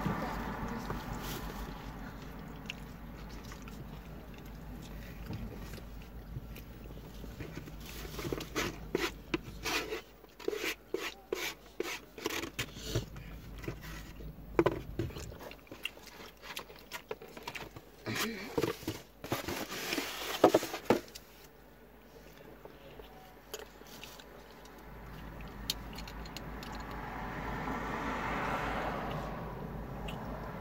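Close-up eating noises: scattered sharp crackles and clicks, densest in the middle, from biting and chewing a fried pastry puff and handling a foam takeout box. A soft rushing noise swells near the end.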